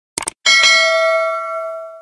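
A quick mouse-click sound effect, then a bell-chime sound effect, the notification-bell ding of a subscribe animation, that rings with several pitches and slowly fades out.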